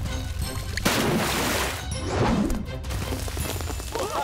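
Cartoon background music, with two loud rushing, crashing sound effects about a second in and again around two seconds in: the sound of a dam bursting and water gushing out.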